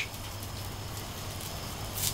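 Faint, steady sizzle of a mayonnaise-coated bun toasting face-down on a hot Cuisinart flat-top griddle, over a low steady hum.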